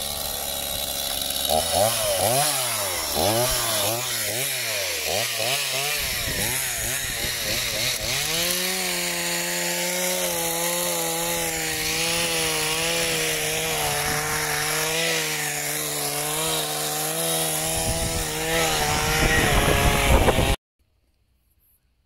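Chainsaw, its pitch rising and falling over and over for several seconds, then held steady at a high pitch for about ten seconds. It cuts off suddenly near the end.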